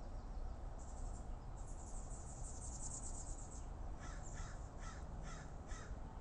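A bird giving five short, harsh calls in quick succession, about half a second apart, preceded by a high trill, over a faint low background.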